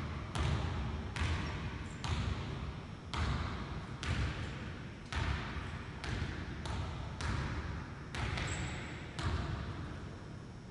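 A basketball dribbled on a hardwood gym floor, about one bounce a second, each bounce echoing through the large hall.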